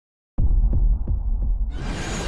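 Electronic intro sound effect: after a moment of silence, a deep bass hum throbs in even pulses about three times a second, then a brighter rising swell comes in near the end.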